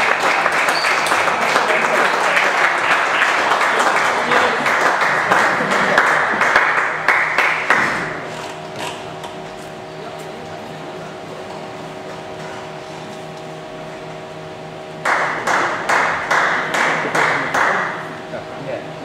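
Spectators applauding for about eight seconds, then dying away to a quiet steady hum in the hall. Near the end a second burst of clapping starts, pulsing in a beat about twice a second.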